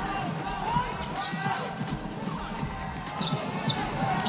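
Live basketball game sound: a steady arena crowd noise with the ball being dribbled and sneakers squeaking briefly on the hardwood court.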